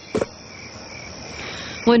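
Night ambience of crickets chirping steadily, with one short, louder sound just after the start.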